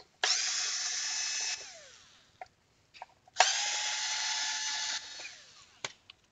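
Cordless power screwdriver run twice, each run lasting about a second and a half, backing screws out of an ECU's metal case, with the motor whine trailing off after each release. A few light clicks between the runs and a sharper knock near the end.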